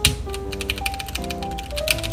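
A quick run of light, sharp clicks from a custom mechanical keyboard being worked on by hand, over background music with a melody.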